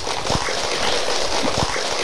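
An audience applauding, a steady patter of many people's hand claps.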